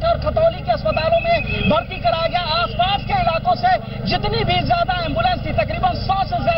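A man talking loudly and continuously over a steady low hum, like an engine or generator running.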